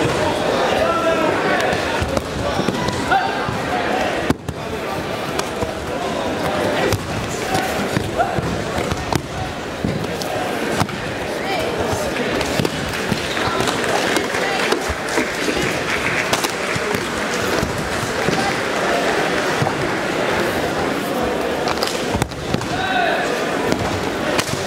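Repeated thuds of bodies being thrown onto padded judo mats during a ju-jitsu multiple-attacker defence, over continuous voices echoing in a large hall.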